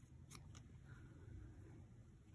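Faint snips of scissors cutting paper over near silence.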